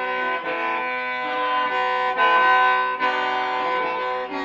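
Hmong qeej, a metal-piped free-reed mouth organ, being tried out: several reed tones sound together in sustained chords, moving to new notes about half a second in and again around two and three seconds in.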